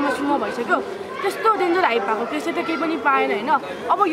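Only speech: a woman talking steadily into an interview microphone.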